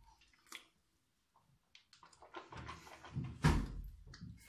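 A child rinsing his mouth with water from a cup and spitting into a bathroom sink: short wet sloshes and splashes after a quiet second, the loudest a little past three seconds in.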